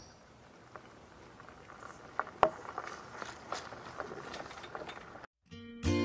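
Faint crunching and scattered small clicks of wheels rolling over a gravel drive as a home-built electric wheelbarrow moves off. The sound cuts out about five seconds in and acoustic guitar music starts.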